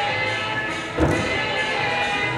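Floor-exercise music playing, with one heavy thud about a second in from a gymnast's feet landing on the sprung floor.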